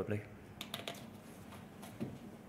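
A few quiet keystrokes on a computer keyboard, a handful of light clicks bunched around a second in.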